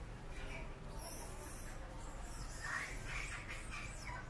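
Newborn macaque giving short, high squeaks in scattered bursts, clustered near the end, over a steady low background rumble.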